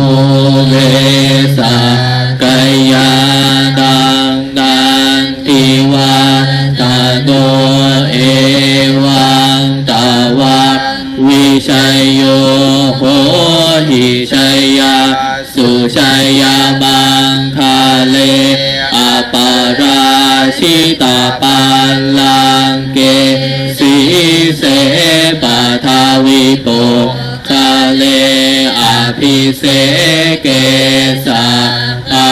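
Buddhist chanting led by a monk over a microphone. It is sung loudly on a near-monotone pitch, with short pauses for breath between phrases and an occasional rise or fall in pitch.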